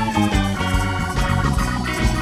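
Live rock band playing an instrumental jam: organ lead over electric guitar, bass guitar and drums, with a steady beat.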